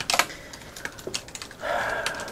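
Gloved hands handling small packs of Japanese gum: a run of crisp, irregular clicks and taps, the loudest just after the start.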